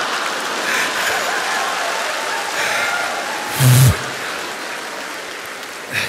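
Studio audience applauding and laughing, the clapping slowly dying away, with a short loud burst about three and a half seconds in.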